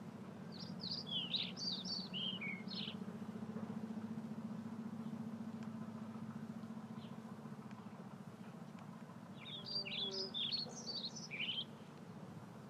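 A songbird singing two short phrases of quick chirping notes, the first about a second in and the second near the end, over a steady low hum.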